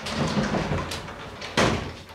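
A sliding wardrobe door with frosted glass panels rolling open along its track, ending in a knock as it reaches its stop near the end.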